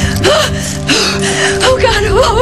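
A woman sobbing with short gasping breaths over a held note of background music.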